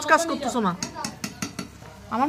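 Kitchen knife tapping and scraping on a steel plate as tomatoes are cut on it: a quick run of sharp metallic clicks in the second half, after a voice trails off.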